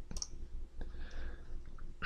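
A few sharp computer mouse clicks over a faint low steady hum. Two come close together near the start and another about a second in.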